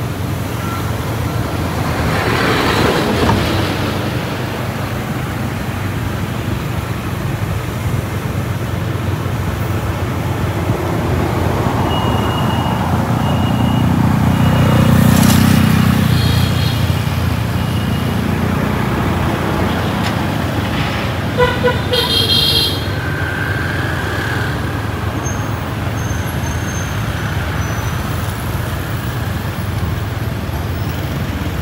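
City street traffic of motorbikes and cars passing close by, with one vehicle louder as it goes past in the middle. A vehicle horn honks twice in quick succession about two-thirds of the way through.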